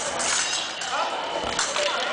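Indistinct voices in a large, echoing sports hall, with a few sharp clicks and knocks from the épée bout on the piste.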